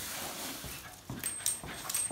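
Small, soft dog noises from leashed dogs coming down tiled steps. Several sharp clicks and a brief high ring come in the second half.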